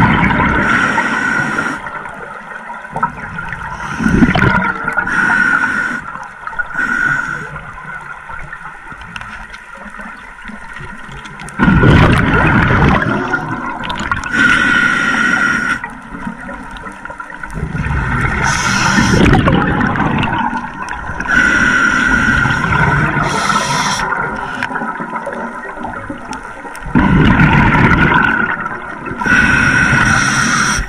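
Scuba diver breathing through a regulator underwater: hissing inhalations alternating with loud gurgling rushes of exhaled bubbles, repeating every few seconds.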